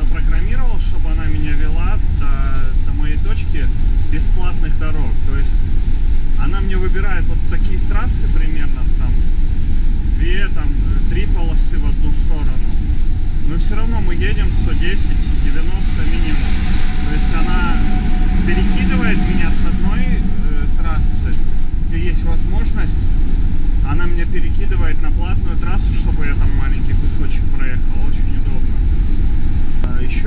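Steady road and engine rumble inside the cab of a Pilote G740 motorhome cruising on a motorway, with indistinct voices talking over it.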